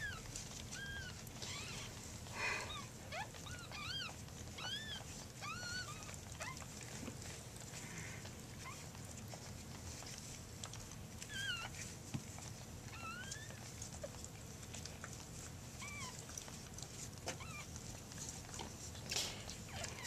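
Newborn cockapoo puppies squeaking: many brief, high, arched squeaks, close together in the first six or seven seconds and scattered after that, over faint rustling of handling.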